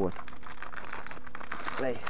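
Rustling and crackling handling noise, many small irregular clicks over a noisy hiss, with a faint steady hum underneath.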